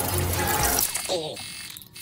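Film soundtrack sound effects: a dense noisy mechanical clatter for about the first second, then a brief voice fragment that fades out.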